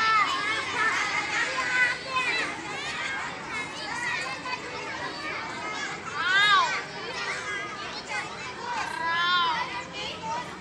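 Many children's voices at once in a schoolyard, calling out and chattering together, with louder high calls rising above the rest about six and a half and nine and a half seconds in.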